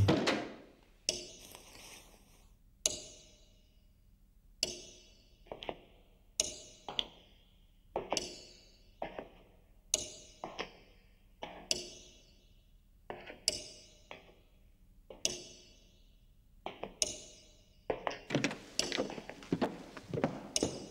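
A wooden door shutting with a heavy thud, then slow, uneven footsteps on a hard floor, echoing in a large panelled room. The steps come about once a second, sometimes two close together.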